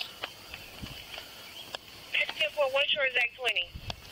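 A high-pitched, garbled voice over a police radio, starting about two seconds in and lasting about a second and a half, after a few faint clicks.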